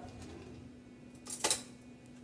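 Kitchenware clinking: one brief clatter about one and a half seconds in, against quiet room tone.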